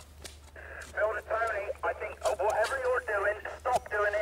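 Indistinct speech that sounds thin and narrow, lacking low and high tones, starting about half a second in, over a steady low hum.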